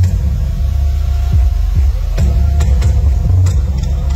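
A loud, deep rumble over a venue sound system, with sharp ticks joining in from about halfway through.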